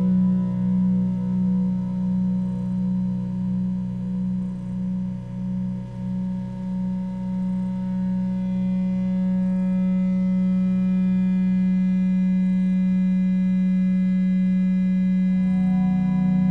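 Modular synthesizer drone oscillators holding a steady low tone with faint higher overtones. The tone wavers in a slow beating pulse for about the first half, then settles into an even drone, and its low pitch shifts as a new higher tone enters near the end.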